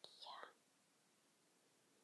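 A brief whispered word of about half a second near the start, then near silence.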